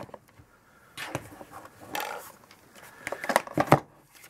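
Clicks and knocks from handling a FrSky Taranis X9D radio transmitter's case as it is turned over and set down, a few scattered clicks first and then a cluster of sharper knocks near the end.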